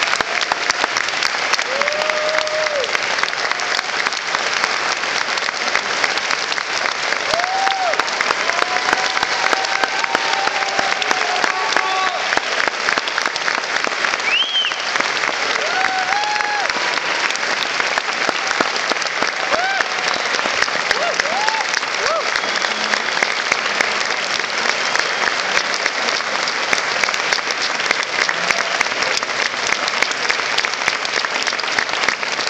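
A concert audience applauding steadily throughout, with scattered cheers and shouts calling out over the clapping, one high rising call about halfway through.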